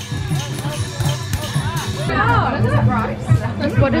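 Music with curving melody lines and regular beats, then an abrupt change about two seconds in to several people talking over crowd chatter.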